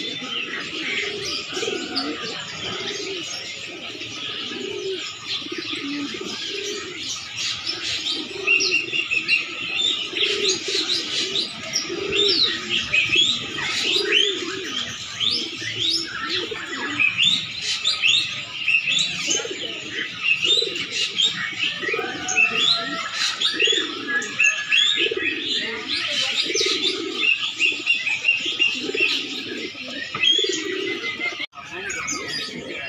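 Domestic pigeons cooing over and over in low, rolling calls, overlapped by a steady stream of quick high-pitched bird chirps that grows busier after the first several seconds.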